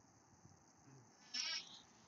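A short, faint, wavering animal call lasting about a third of a second, about a second and a half in, over low room noise.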